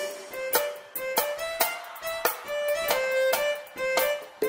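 Forró band music in an instrumental passage: short, repeated melody notes over sharp percussion beats, with no singing.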